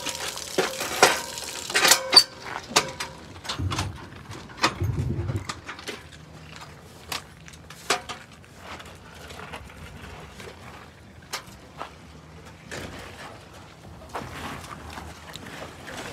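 Scattered knocks, clicks and clatter as aluminium release pipes and flexible hoses are handled and fitted together, with a couple of duller thumps about four to five seconds in.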